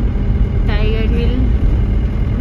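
A car's engine and road noise heard from inside the cabin as it drives up a hill road, a steady low rumble. A voice speaks briefly about a second in.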